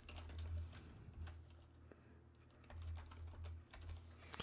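Faint typing on a computer keyboard: scattered, irregular keystrokes as a line of code is entered, with a low hum that comes and goes underneath.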